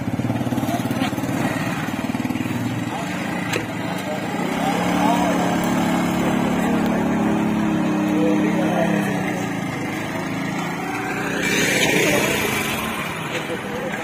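A small motorcycle engine running as the bike, heavily loaded with riders, pulls away along a dirt road, with voices over it. A rising whine comes about twelve seconds in.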